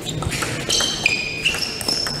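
Table tennis rally: the celluloid ball clicks sharply off the bats and table several times. Short high squeaks from shoes on the floor run through the second half.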